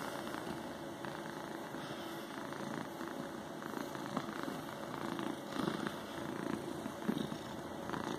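Tabby cat purring steadily while being stroked on the head, close to the microphone.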